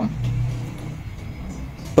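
Low rumble with a faint hum, easing off slightly.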